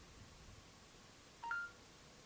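Short two-note rising electronic beep from a Samsung Galaxy S5's speaker about one and a half seconds in: the S Voice prompt tone signalling that it is ready to listen. Faint room tone otherwise.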